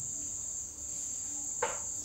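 Steady, high-pitched chirring of insects. A brief voice sound comes near the end.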